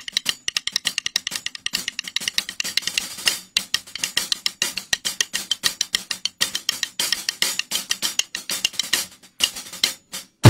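Wooden drumsticks clicked against each other in a quick, steady run of light ticks, with light hi-hat strokes mixed in.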